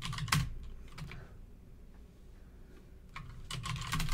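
Computer keyboard typing: a few keystrokes in the first second, a pause, then more keystrokes near the end, as a reply is entered at a terminal prompt.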